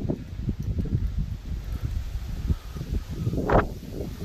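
Wind buffeting the microphone, a fluctuating low rumble, with one short pitched voice-like call about three and a half seconds in.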